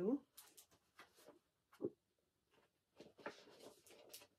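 Faint rustling of paper and packaging as a wrapped gift is picked up and handled, with a single sharp click about two seconds in and a busier patch of rustling near the end.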